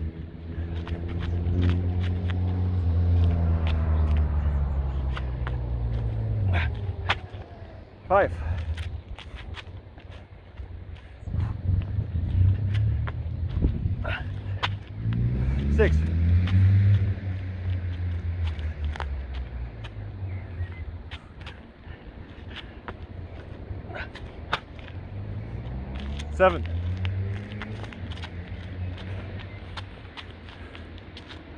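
Motor vehicles passing three times, each a low engine hum that swells and bends in pitch as it fades. Between them come short knocks, which fit hands and feet landing during burpees. A man counts "six" about halfway through.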